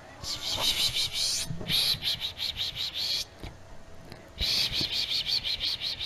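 Rapidly pulsing, high-pitched animal calls in two bouts of about three seconds each, with a short break in between.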